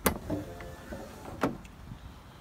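A door latch clicks open, then the electric motor of an AMP Research PowerStep running board hums steadily for about a second as the step deploys, ending in a sharp clunk as it reaches its stop.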